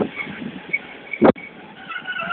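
Passenger coaches rolling slowly past along a platform, with short faint high-pitched squeaks from the running gear and a single sharp knock a little past halfway.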